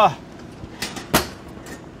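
A glass baking dish being drawn out on an oven's metal wire rack: a faint click, then one sharp clink a little over a second in.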